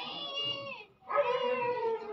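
Two drawn-out, high-pitched vocal calls, the second longer and louder and falling slightly in pitch at its end.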